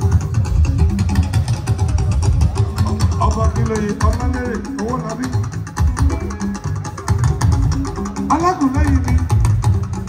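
Live juju band music played loud through PA loudspeakers: heavy bass and drums throughout, with a sung vocal line about three seconds in and again near the end.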